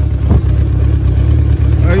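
Honda CB750 K4's air-cooled inline-four engine idling steadily at about 1200 rpm, which the owner judges to be running well.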